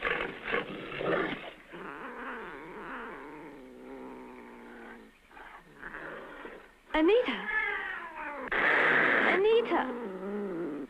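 A woman's wailing, cat-like yowls and screams. They waver at lower strength in the first half, then turn sharp and swoop up and down in pitch about seven seconds in, with the loudest, harshest scream near the end.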